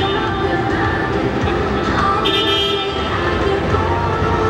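Busy city-street ambience: traffic running, with music playing from large outdoor video screens. A short high-pitched tone stands out about two seconds in.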